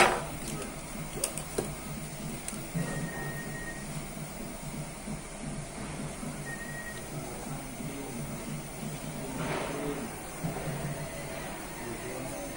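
A sharp click right at the start, then quiet room background with faint music.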